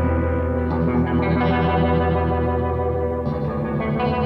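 Rock album track: an electric guitar run through effects rings out sustained chords over a low bass drone, with no drums. New notes come in about a second in and again near the end.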